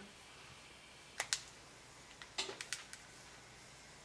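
Light clicks and handling noise from a GHD flat iron being picked up and clamped onto a strand of hair: two clicks just over a second in, then a quicker run of clicks around two and a half seconds.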